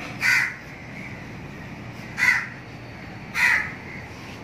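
A crow cawing three times: short, harsh, loud calls, the first just after the start, the second a little past two seconds in and the third about three and a half seconds in.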